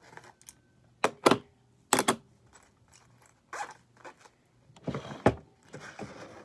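Small makeup items being handled and packed into a makeup bag: a series of sharp clicks and knocks of plastic items set down and bumping together, with rustling between.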